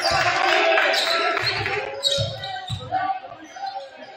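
Basketball dribbled on a hardwood gym floor, a run of short low bounces, with indistinct voices calling out in the gym; the bouncing and voices thin out near the end.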